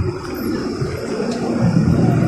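Engine of an AYCO-bodied Mercedes-Benz 1570 bus, heard from inside the cabin while the bus is moving, with a low drone that grows louder toward the end.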